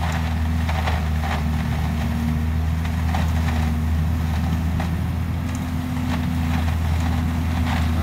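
Municipal leaf vacuum truck running steadily, its engine-driven vacuum drawing leaves up through the suction hose. It gives an even low drone with a few light clatters.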